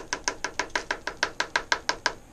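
A fast, even series of sharp knocks, about seven a second, all alike, that stops suddenly.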